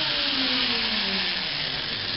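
Zipline trolley pulleys whirring along the cable as a rider comes in, the whine falling steadily in pitch as the trolley slows, over a steady hiss.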